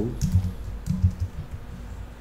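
Computer keyboard being typed on: a handful of irregular keystrokes, dull taps with a few sharper clicks.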